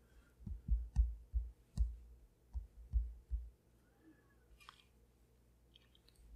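Stylus tip tapping on an iPad Pro's glass screen: a run of about eight soft, dull taps, irregularly spaced, over the first three and a half seconds, then a few faint ticks.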